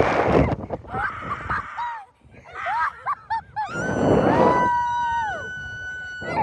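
Two girls screaming as they are shot up and swung on a slingshot ride: short rising-and-falling shrieks, then one long held scream from about four seconds in. Wind rushes over the microphone in gusts with the ride's motion.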